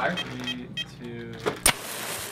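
A small electric igniter wired to a rocket recovery electronics board firing: a sharp pop about one and a half seconds in, then a hiss of burning sparks for under a second. Firing it is a test of the recovery deployment circuit.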